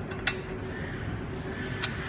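Two light clicks about a second and a half apart as a metal pin is fitted through the holes of an aluminum beach cart's receiver arm, over a steady low background hum.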